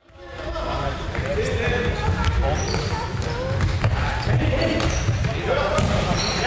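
Live sound of an indoor futsal game echoing in a large sports hall: players' voices shouting, with sharp knocks of the ball being kicked and bouncing on the hard court floor. The sound cuts in abruptly at the start.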